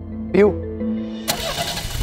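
Dramatic car sound effect: about a second in, an engine surge with a rushing noise comes in over a steady music drone and grows louder.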